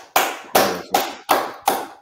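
Hand clapping in a steady beat, about six claps, applauding a correct answer.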